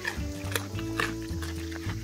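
Mini pig crunching and chewing a raw carrot, with sharp crunches about every half second, over background music.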